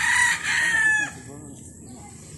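A rooster crowing: one long, high call that ends about a second in, followed by fainter clucking.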